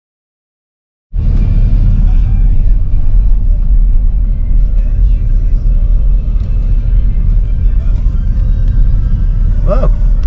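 Car on the move, heard from inside the cabin: a steady low rumble of road and engine noise that cuts in suddenly about a second in.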